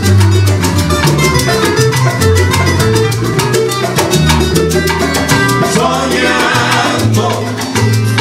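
A live Cuban salsa band playing, with a bass line under steady percussion.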